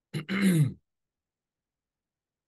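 A man clearing his throat once, a short falling-pitched "ahem" near the start, followed by silence.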